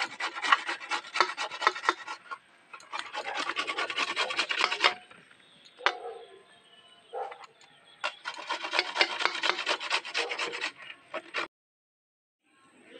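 Raw papaya being grated by hand: quick, even rasping strokes in three runs, with short pauses between them.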